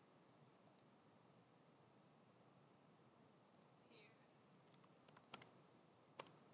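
Near silence: room tone, with a few faint computer mouse clicks near the end.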